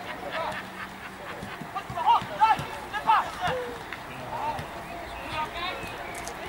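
Football players' short shouted calls during open play, the loudest a couple of seconds in and a few more near the end, over outdoor background noise.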